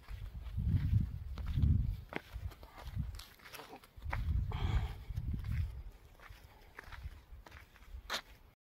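Footsteps on dry, cracked soil, with scattered short clicks, amid two long spells of deep rumbling from wind and handling on a phone's microphone as it is carried along.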